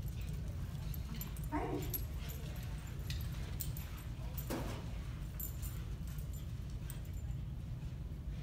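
Small dog whimpering briefly twice, about a second and a half in and again more faintly around four and a half seconds, with light clicks, over a steady low rumble.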